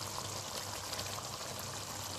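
Tomato fish soup simmering in a large pot, a steady soft bubbling and crackle.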